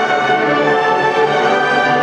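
Large massed school orchestra playing, violins and other strings in front with brass behind, holding sustained notes at a steady full level.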